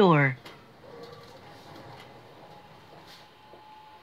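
A synthesized train announcement voice ends in the first moment. Then comes faint, steady background noise inside a train car, with a faint held tone in the second half.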